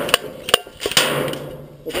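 Airsoft BBs hitting a cardboard Pringles can on a concrete block. There are several sharp knocks within the first second, and then a rattling clatter as the can is knocked off.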